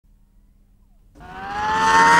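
Near silence, then about a second in a tone with overtones fades in and slowly rises in pitch.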